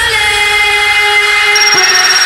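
Electronic dance music in a drum-free breakdown: a loud, held, buzzy synthesizer chord with no bass or beat. A thin high tone joins it near the end.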